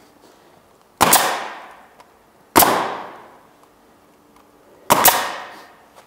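Pneumatic roofing nailer firing three times, driving nails through an asphalt shingle; each shot is a sharp bang that dies away within a second, the second about a second and a half after the first and the third about two seconds later.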